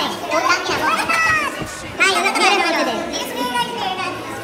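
Overlapping chatter of several young voices talking and calling out at once, with no single clear speaker.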